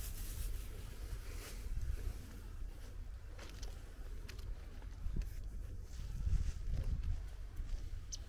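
Wind rumbling on the microphone, with a few faint scattered clicks.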